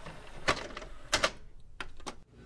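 A typewriter-like clicking sound effect: a handful of sharp clicks and short crackles at irregular spacing, over a faint hiss.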